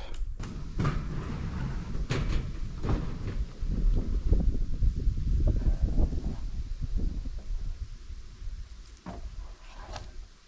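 Lumber planks being slid off a trailer and set down, a string of wooden knocks and clatters over a low rumble. The knocks thin out over the second half, with one more near the end.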